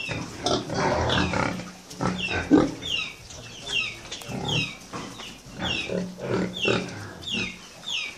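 Pigs grunting in short low bunches, with a regular series of short, high chirps falling in pitch, about two a second, behind them.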